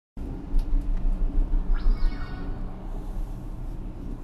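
Gondola cabin riding the haul cable out of the base station: a heavy low rumble that pulses during the first two seconds, a few sharp clicks, and a brief high squeal that glides up and back down near the middle.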